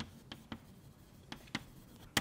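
Chalk writing on a blackboard: a handful of short, sharp taps and strokes, unevenly spaced.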